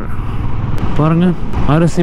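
Royal Enfield Classic 350's single-cylinder engine running at highway cruising speed, a steady low rumble, with a man's voice speaking briefly over it twice.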